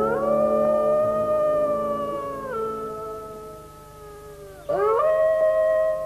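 A dog howling: two long howls. The first slides up and holds, then drops lower and fades. The second slides up again about five seconds in.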